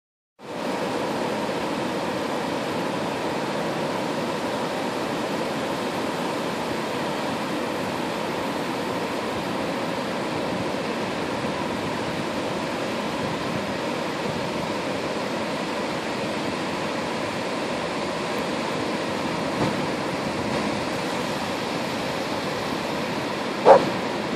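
Ocean surf breaking on a flat sandy beach: a steady, unbroken wash of wave noise. Right at the end a short hooting 'woo' call begins.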